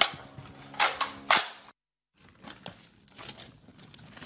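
Two sharp gunshots about half a second apart, then, after a brief break, faint scattered clatter and clicks.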